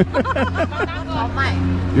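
Several people talking in the background, a mix of voices that is busiest in the first second, over a steady low hum.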